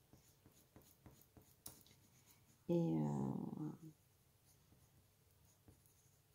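Colouring pencil rubbed on paper in short, quick strokes: a faint, rapid scratching as a drawing is coloured in.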